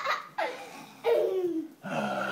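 High-pitched laughter in several short bursts; the longest comes about a second in and falls in pitch.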